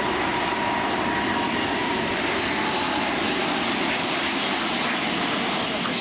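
Four-engined Airbus A380 jet airliner in flight overhead, its engines making a steady loud rushing noise. A faint high whine rides on it for the first couple of seconds.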